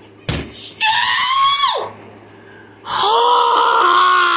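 A thump, then a person screaming in frustration twice: a short high scream about a second in that drops in pitch as it ends, then a longer sustained scream starting about three seconds in. The screams answer another rejected confirmation code.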